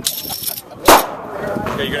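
A single loud, sharp gunshot about a second in, with a short echo, amid talking.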